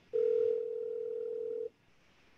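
Telephone ringback tone heard down the line of an outgoing call: one steady tone lasting about a second and a half, which stops suddenly.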